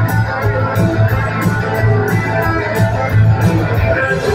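Live rock band playing, with electric guitars, bass guitar and drums, over a steady cymbal beat and a heavy bass line.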